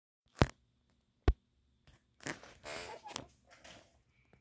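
Two sharp clicks a little under a second apart, then about a second and a half of irregular rustling and scraping, like handling noise on the phone or camera.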